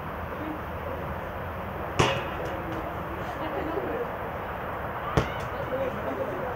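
A football being kicked twice, a sharp thud about two seconds in and another about five seconds in, the first the louder, over faint voices of players on the pitch.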